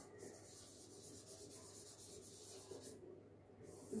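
Faint strokes of a marker writing on a whiteboard, stopping about three seconds in.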